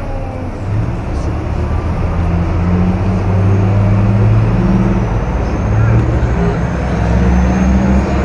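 A city bus's engine running close by, a low drone that swells about a second in and holds, over busy street traffic noise and crowd chatter.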